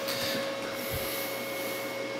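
Steady electric whine over a hiss from a two-wheeled self-balancing robot's DC drive motors as they keep making small corrections to hold it upright, with a soft low thump about a second in.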